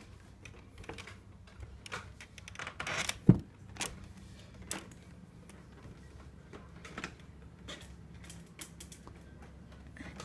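Footsteps, knocks and clicks of a person climbing up into a loft and moving over its boards, with one loud thump a little over three seconds in and a faint steady low hum underneath.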